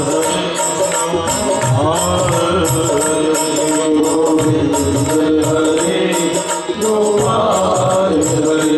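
Live Hindu devotional bhajan: male voices singing a gliding melody to harmonium accompaniment, over a steady percussion beat.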